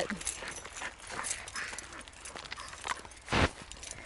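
Footsteps and small clicks while walking a dog on a paved lane, with one short low thump on the microphone a little over three seconds in.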